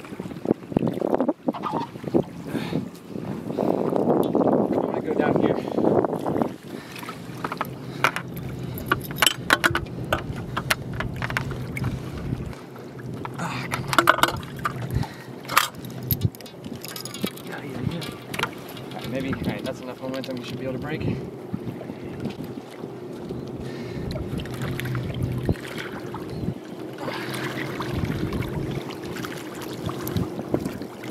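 Indistinct voices over sloshing water, with scattered sharp clicks and knocks. A steady low hum sets in about a third of the way through.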